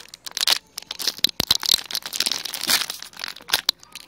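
Plastic snack wrapper being crinkled and torn open by hand, an irregular run of crackles.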